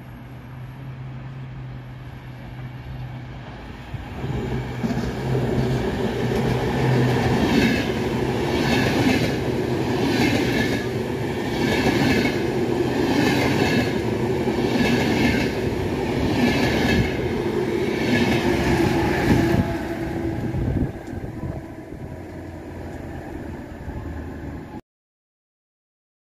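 Electric-hauled VR InterCity train of double-deck coaches passing close by. A steady hum gives way to the rumble of the coaches, and the wheels clatter in a regular beat about every second and a half as each coach's bogies go by. The sound drops away near the end.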